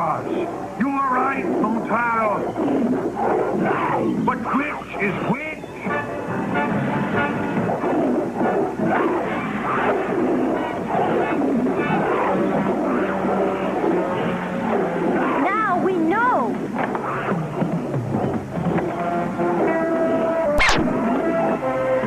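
Cartoon soundtrack of dramatic background music with animal snarls and cries, as in a fight between wild animals, and a single sharp crack near the end.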